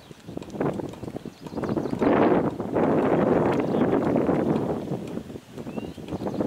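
Wind buffeting the camera microphone: a rushing noise that comes up loud about two seconds in and drops away shortly before the end.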